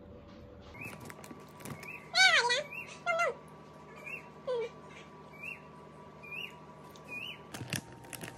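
Birds calling: a short rising chirp repeats about once a second, and louder calls that slide downward come about two and three seconds in and again midway.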